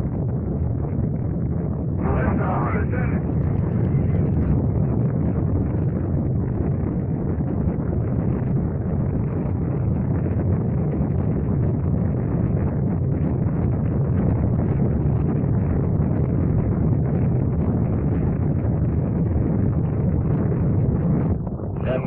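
Space Shuttle Columbia's rocket engines firing on the launch pad: a loud, steady, deep rumble that holds at the same level throughout.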